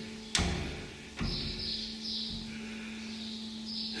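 A locked glass door with metal bar handles pulled and rattled in its frame: two knocks about a third of a second and a second in, then light scraping. A steady low hum runs underneath.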